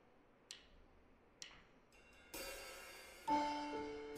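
Opening of a live band's ballad: two light cymbal ticks about a second apart, then a cymbal swell a bit after two seconds, and a piano chord comes in near the end as the song begins.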